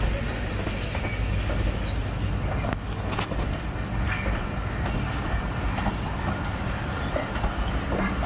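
Passenger coaches of a Pakistan Railways express rolling along the platform, a steady rumble of steel wheels on rail. A few sharp clacks come about three seconds in.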